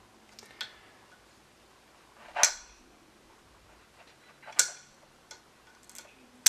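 Metal clicks of an AR-15's A2-style front sight post as its spring detent is pressed with a bullet tip and the post is turned. There are two loud, sharp clicks about two seconds apart, with a few fainter ticks before and after.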